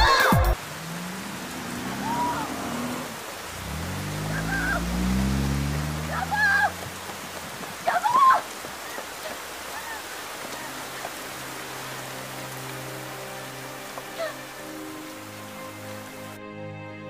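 Steady rain falling on pavement, with a woman's distant shouts of "Honey!" a few times, the loudest about two-thirds of the way through the first half. Soft, sad, sustained music comes in under the rain in the second half.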